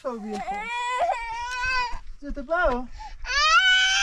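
A young child crying: two long, high wails with a short, lower whimper between them.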